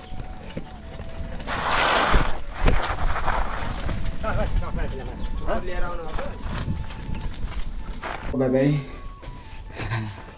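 Bicycle ridden along a paved road: wind buffets the microphone in a loud surge early on, and the bike knocks and rattles over the surface, with a sharp knock about three seconds in. Voices call out briefly around the middle and again near the end.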